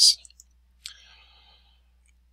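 A single computer mouse click about a second in, followed by a faint breath. It comes just after a brief hiss at the very start, the tail of a spoken word.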